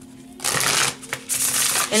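A deck of tarot cards being shuffled by hand: two short bursts of rasping card shuffling, the first about half a second in and the second near the end.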